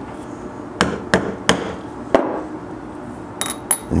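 Mallet striking a steel eyelet setting tool four times to set a scored eyelet through leather on an anvil: three quick taps about a third of a second apart, then a fourth after a short pause. Two light clicks near the end.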